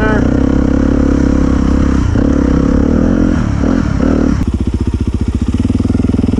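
Dirt bike engine running at low speed under light throttle on a slow trail ride. About four and a half seconds in it drops to a slower, even chugging of separate firing pulses.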